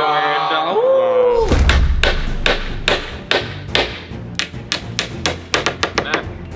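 A man's drawn-out "yaaah" for the first second and a half, then a quick run of sharp hammer blows on a thin wooden frame, about three or four a second, over background music.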